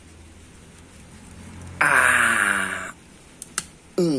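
Hand shears forced through a thick Sancang (Premna microphylla) bonsai branch. About two seconds in there is a loud strained noise lasting about a second, falling in pitch, then two sharp clicks as the cut goes through.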